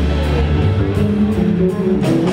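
Live band playing amplified music, with electric guitar leading over the band in sustained notes and one note sliding down about half a second in.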